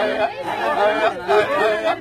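Group of Maasai voices chanting in short repeated phrases to accompany the jumping dance.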